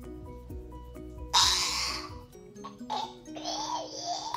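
Background music with a steady run of light notes. About a second in comes a loud rough noise, and from about three seconds more rough, voice-like noises: a boy making fake crunching sounds with his mouth while pretending to eat a spoon.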